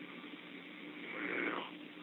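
Telephone-line pause: steady low hum and hiss, with a faint raspy breath that swells and fades about a second in.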